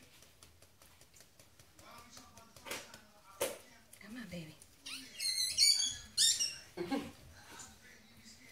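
Newborn Yorkshire terrier puppy giving a cluster of short, high-pitched squeaky cries about five seconds in, while it is being rubbed and tapped to clear fluid from its lungs. Two short knocks come a couple of seconds before the cries.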